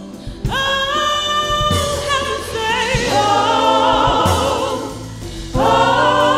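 Live gospel worship music: a group of singers holding long notes with vibrato, with instrumental backing. A new held note starts about half a second in, and another near the end.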